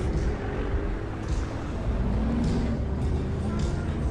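Low, steady engine rumble as a Lamborghini Huracán's V10 pulls away at parade pace, with music playing in the background.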